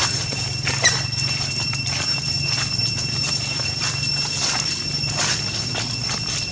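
Dry leaves crackling and rustling under a macaque's steps as it walks over leaf litter, with one short high chirp about a second in. A steady low hum and a thin high tone run underneath.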